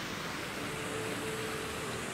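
Steady wash of splashing water from a plaza fountain's jets, with a low hum of road traffic beneath.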